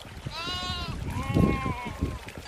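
Sheep or goat-like livestock bleating twice, back to back, each a wavering call of under a second, over a low rumble.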